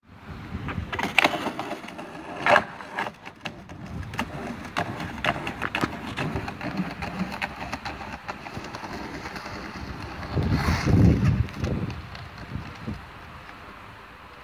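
Skateboard wheels rolling over brick paving, with sharp clacks and knocks of the board and trucks. There is a louder low rumble about ten seconds in.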